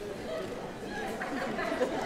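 Several voices murmuring and chattering indistinctly over one another, with no clear words, and a brief knock near the end.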